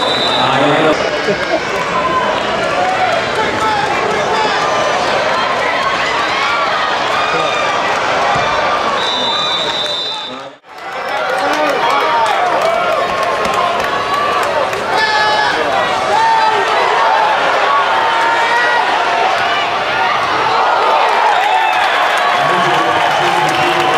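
Indoor arena crowd: many voices talking and calling out at once. A short high whistle sounds at the very start and again about nine seconds in, and the sound cuts out for an instant about halfway through.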